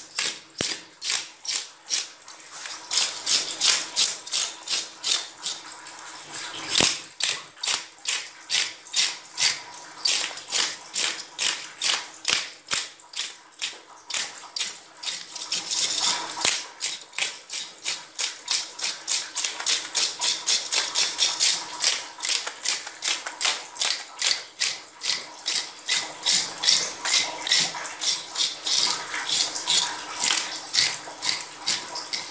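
A scaler scraping the scales off a large catla fish in fast, rhythmic strokes, about two to three a second, with a dry, rasping rattle.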